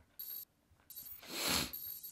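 Opening of a slam death metal track's intro sound effect: a short burst of hiss, a pause, then a noisy swell that builds and peaks about a second and a half in, with a faint high whine over it.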